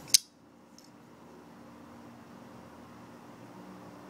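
Todd Begg flipper folding knife flicked open on its bearing pivot, the blade snapping into lockup with one sharp metallic click just after the start. Then only faint room hum.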